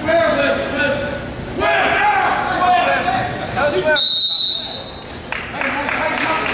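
Coaches and spectators shouting in a reverberant gym. About four seconds in comes a single steady, high referee's whistle blast lasting about a second, stopping the action on the mat.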